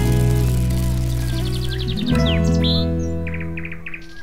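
Closing theme music of a TV show: sustained chords that change about halfway through, with bird chirps and trills layered over them.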